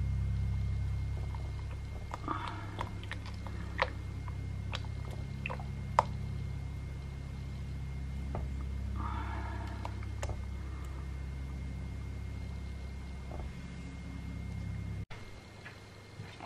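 Silicone spatula stirring melted melt-and-pour soap base with gold mica in a glass Pyrex jug: soft scrapes and occasional light clicks against the glass, over a steady low hum. The hum stops suddenly about a second before the end.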